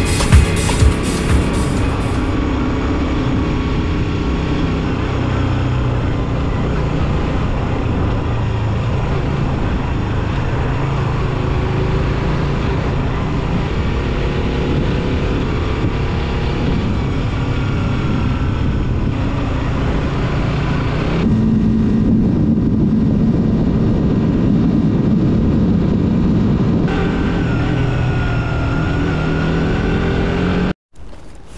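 Motorcycle riding on town streets: the engine runs with wind rush on the microphone, its note rising and falling with the throttle and stepping up about two-thirds of the way through. Music plays along with it.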